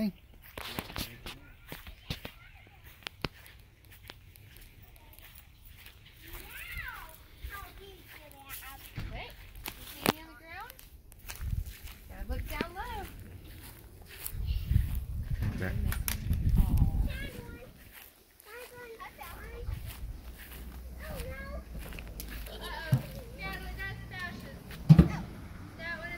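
Children's voices talking and calling out at a distance, with a low rumble lasting a couple of seconds just past the middle and a sharp knock near the end.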